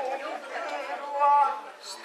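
A performer's voice declaiming lines in the drawn-out, half-sung style of kagura theatre, with one long held syllable a little past the middle.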